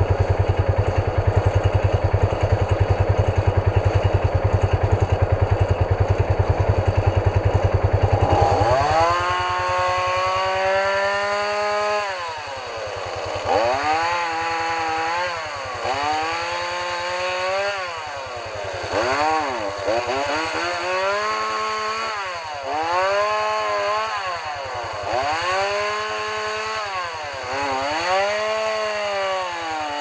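An engine idling steadily. About eight seconds in, a gas chainsaw revs up and then keeps revving up and dropping back every second or two as it cuts through fallen aspen branches.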